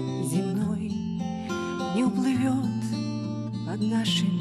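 Acoustic guitar strummed as the accompaniment to a song, its chords held over a sustained bass note that changes every second or so.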